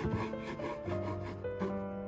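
A kitchen knife sawing back and forth through a baked oatmeal egg bread with a cheese crust, scraping on a wooden cutting board in short quick strokes. Background music plays underneath.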